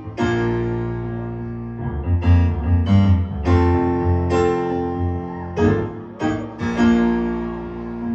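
Grand piano playing a slow introduction: full chords with deep bass notes, struck one after another and left to ring.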